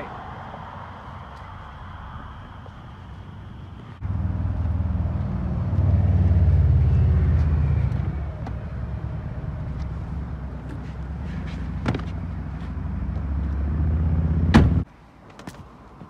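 A car running with a low rumble that comes in suddenly about four seconds in. It is heaviest a couple of seconds later, then steadier, and builds toward the end before a click and an abrupt cut-off.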